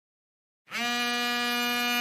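Mobile phone buzzing for an incoming call: one steady, even electric buzz on a single pitch, starting about half a second in and lasting about a second and a half.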